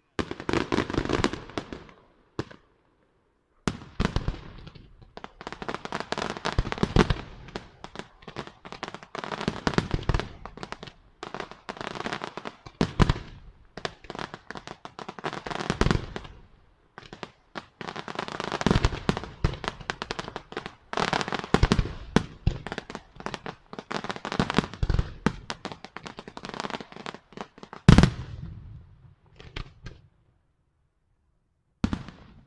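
Senatore Fireworks aerial display: a rapid, near-continuous run of shell bursts and crackling reports. There is a short silent gap about two seconds in, and a single louder bang near the end.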